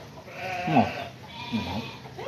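A farm animal bleating, two calls about a second apart.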